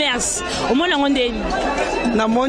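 A woman speaking into a handheld microphone, with chatter in the background.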